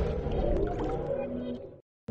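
The decaying tail of an electronic channel-intro jingle fading away, ending in a moment of dead silence near the end.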